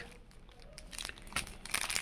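Clear plastic packet around a folded towel crinkling as it is handled, faint at first, with scattered sharper crackles in the second half.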